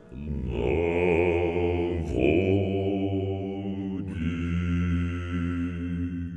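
Basso profondo vocal trio singing long, very deep sustained notes with vibrato, three held notes in turn, changing about two and four seconds in.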